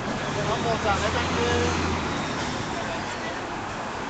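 City street traffic with a motor vehicle's low engine hum that swells in the first two seconds and then fades, with people's voices talking over the traffic noise.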